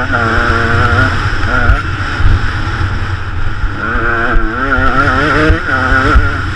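KTM 125 EXC two-stroke enduro motorcycle at speed, its engine note climbing and then dropping back several times as the rider accelerates and shifts gear. Uneven wind rumble on the microphone sits underneath.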